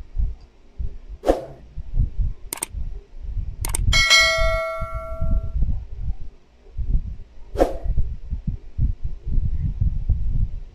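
A subscribe-button sound effect: two sharp clicks, then a bell ding that rings out and fades over about a second and a half, with soft low thumps underneath throughout.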